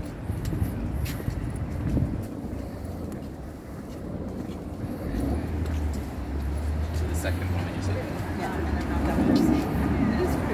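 Street ambience on a city pavement: a steady low rumble of road traffic, with scattered clicks of footsteps. People's voices come in near the end as passers-by walk close.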